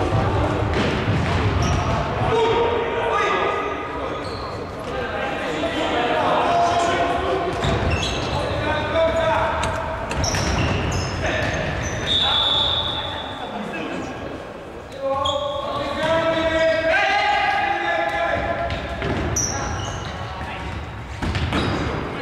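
A futsal ball being kicked and bouncing on a wooden sports-hall floor, with players' shouts echoing through the large hall.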